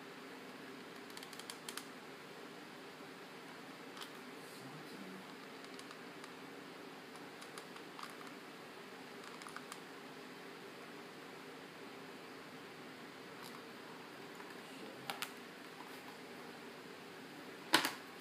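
Faint steady room hum with scattered small clicks and taps from a mini hot glue gun and ribbon being handled on paper, and one sharper knock near the end.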